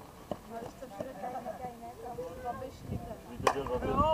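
A softball bat hitting a slowpitch softball: one sharp crack about three and a half seconds in, over players' voices.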